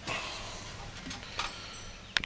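Handling noise: a few light knocks and rustles over a steady background hiss.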